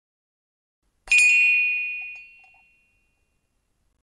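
A single bright bell-like ding about a second in, ringing out and fading away over about a second and a half.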